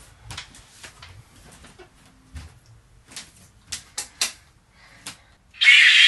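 About a dozen light, scattered clicks and taps, then a loud rushing hiss starting near the end.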